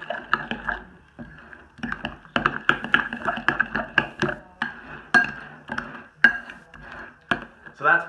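Spoon stirring a thick cream cheese and sour cream dip in a bowl, with irregular clinks and knocks against the bowl.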